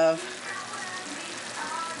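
Food sizzling in a hot, steaming cooking pot, a steady hiss.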